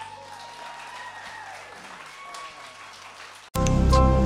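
Audience applauding as the song ends. About three and a half seconds in, it cuts suddenly to loud music with a beat.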